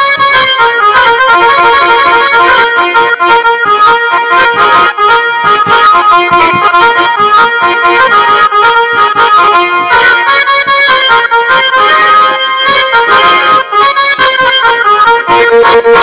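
Loud instrumental dance music for a Bengali jatra stage dance: a busy melody of quick, short notes that runs on without a break, with no singing.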